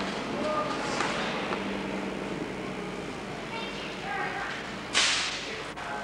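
Faint background voices over room noise; about five seconds in, a sudden loud rushing noise that dies away within half a second.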